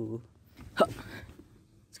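A man's single short, breathy "hah" about a second in, against faint room tone.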